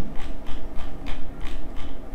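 Computer mouse scroll wheel ratcheting through its notches: a quick series of clicks as a document is scrolled down.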